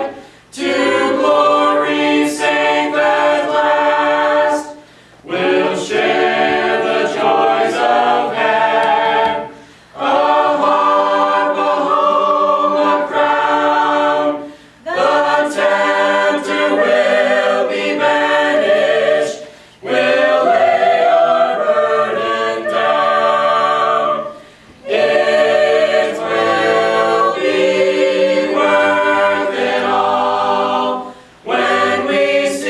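Mixed a cappella vocal ensemble of men and women singing a gospel hymn in parts, without accompaniment. The singing comes in phrases about five seconds long, with a brief breath-pause between each.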